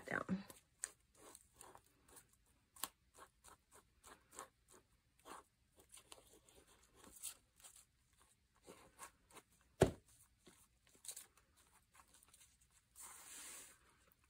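Faint, scattered ticks and rustles of paper being handled while glue is squeezed from a bottle onto a paper strip, with one sharp knock about ten seconds in. Near the end comes a brief rubbing as the strip is pressed and smoothed onto the page.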